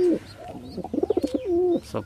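Domestic pigeons cooing: low, wavering coos through the middle, the last one bending downward.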